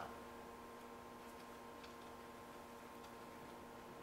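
Near silence: room tone with a steady faint hum and a few faint ticks.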